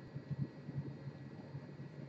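Quiet steady low room hum, with a few soft low bumps about half a second in from hands and a sculpting tool working on the clay bust.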